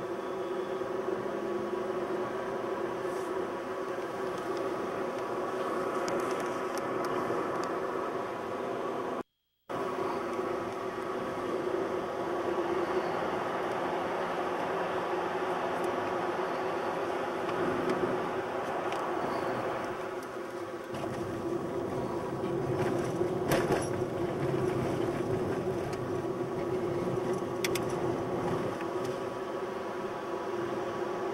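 Car cabin noise while driving on a highway: a steady engine drone with tyre and road noise. The sound cuts out completely for about half a second roughly a third of the way in.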